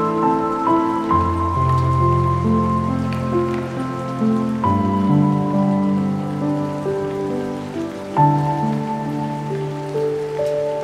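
Slow, melancholic piano music, held chords and single notes with deep bass notes, laid over a steady recorded rain sound.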